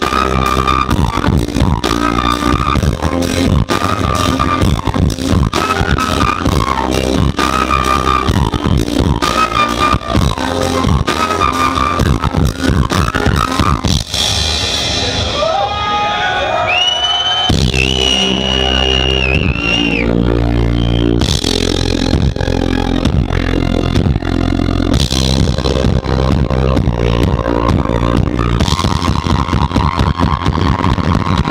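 Live band music with drums, bass guitar, electric guitar and flute, and beatboxing into a handheld microphone in the opening seconds. About halfway through, the drums and bass drop out for a few seconds of sustained, gliding tones, then the full band comes back in.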